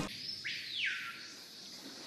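A single high whistle-like tone that glides steeply down in pitch about half a second in, levels off and fades out, over a faint steady hiss.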